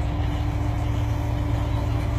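Rock crawler buggy's engine running steadily at low revs as the buggy crawls slowly down a steep rock face, giving a low, even rumble with a faint steady hum above it.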